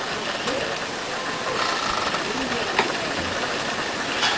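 Steady background hiss with faint, indistinct voices murmuring now and then.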